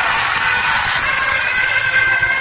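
Live rock concert heard from within the audience: steady high held tones over a dense wash of crowd noise.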